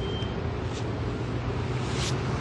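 Steady outdoor ambience on a rooftop: wind with a low rumble like distant traffic, and a faint rush of wind about a second in and again at the end.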